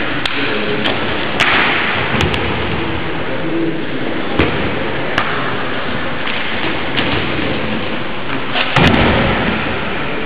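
Several thuds of bodies hitting padded gym mats during a wrestling bout, the heaviest near the end, over a steady loud hiss.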